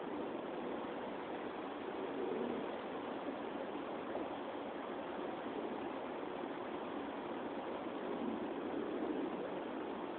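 Steady outdoor background hiss with no distinct events: no shot or impact is heard.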